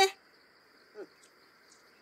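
A pause between lines of speech: a voice cuts off at the start, leaving a faint steady high-pitched tone and a brief faint low sound about a second in.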